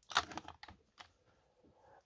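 A few light clicks and taps, most of them in the first half second and one more about a second in: a makeup brush being set down among tools on a workbench.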